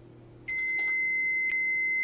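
Electronic beep sound effect: one steady high tone that starts about half a second in and holds to the end, with two faint clicks over it.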